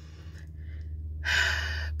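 A woman draws a loud, audible breath in, about a second and a half long, starting a little past halfway, just before she speaks again. A steady low hum runs underneath.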